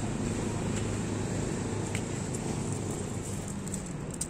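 A steady low engine drone in the background.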